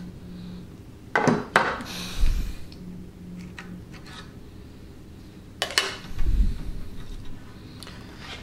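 Clicks and knocks of a small clear plastic packer piece being worked loose from hardened two-part wood filler on a wooden curtain pole. They come in two clusters, one about a second in and another around six seconds in.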